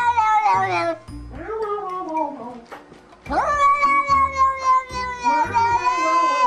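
A cat's long, drawn-out yowls that sound like "no": three calls, each held and then falling in pitch, the last starting with a quick rise a little past halfway. Background music with a low beat runs underneath.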